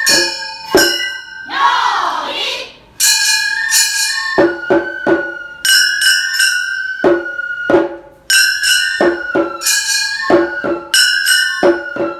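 Gion bayashi festival music: small brass kane gongs struck again and again in a quick, ringing 'konchikichin' pattern, with a bamboo fue flute holding notes over them and taiko drum strokes.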